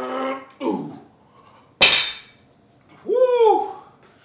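A man straining through the last rep of EZ-bar curls: a strained groan, then a short falling grunt, then about two seconds in a single sharp metallic clank of the loaded curl bar with a brief ring, followed by a drawn-out gasping exhale.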